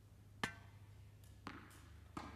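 Tennis ball bouncing twice on a hard court: a sharp pock about half a second in and a fainter one about a second later.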